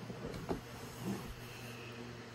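Quiet room noise with a steady low hum, a short soft knock about half a second in and a fainter bump about a second in.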